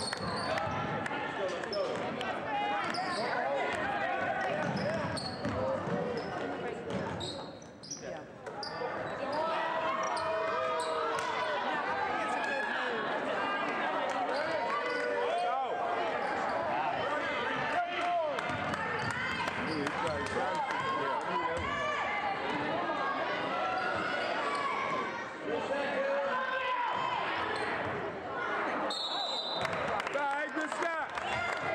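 A basketball bouncing on a hardwood gym floor during play, with many spectators' and players' voices overlapping and echoing in the hall. The sound dips briefly about eight seconds in.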